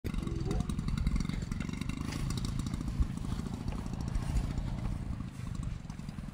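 Wind buffeting the microphone: an uneven low rumble with no steady motor tone, and a brief voice sound near the start.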